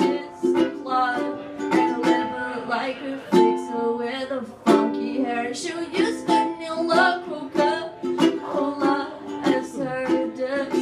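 Ukulele strummed in a steady rhythm, chords ringing between the strokes, as part of a live song.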